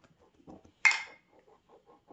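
A short, sharp mouth smack about a second in from a man tasting a sip of root beer, followed by faint small clicks of the mouth.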